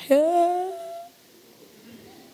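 A woman's drawn-out, hum-like vocal sound, held for about a second with a slight upward glide in pitch, a reaction of mock shock; after it, only faint room noise.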